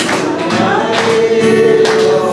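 A man and a woman singing a hymn together with long held notes, accompanied by an acoustic guitar strummed about once a second.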